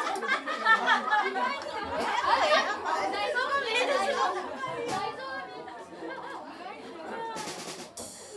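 Several people talking over one another in a small room, crowd chatter with a few stray drum sounds.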